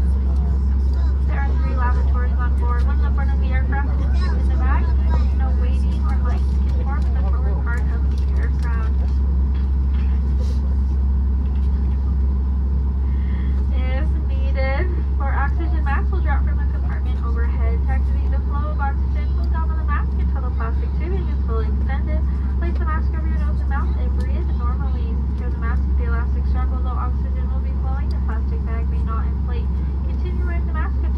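Steady low rumble inside the cabin of a Boeing 737 MAX 8 during pushback and engine start, with passengers talking indistinctly in the background.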